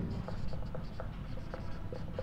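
Marker pen writing on a whiteboard: a run of short, faint strokes as letters are written.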